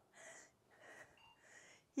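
Faint breathing of a woman exercising: three short, soft breaths during half roll-ups.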